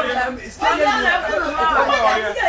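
Several people talking at once, with a short lull about half a second in.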